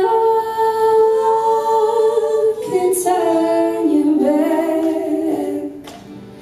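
A folk band's female vocals singing long, held notes, with the instruments faint beneath them; the notes change twice and the phrase fades near the end.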